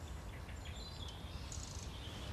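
Quiet outdoor ambience: a few high bird chirps and short whistles over a low steady rumble.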